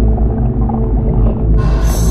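Background music of sustained, droning tones, with a bright high shimmer coming in near the end.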